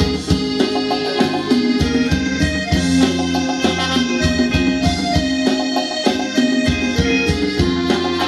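Live Thai ramwong dance-band music: a keyboard or organ melody over a steady beat.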